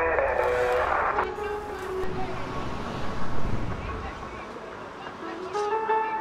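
Voices over a low engine rumble that fades out about four seconds in, then a plucked-string melody begins near the end.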